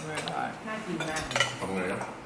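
Metal spoon clinking and scraping against a bowl while eating, with a few sharp clinks.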